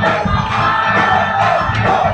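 Loud, up-tempo worship music with a steady beat, the congregation singing and calling out along with it.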